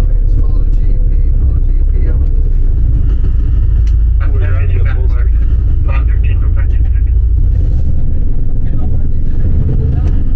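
Steady low rumble of a tour bus driving, its engine and road noise heard from inside the passenger cabin, with faint voices in the background.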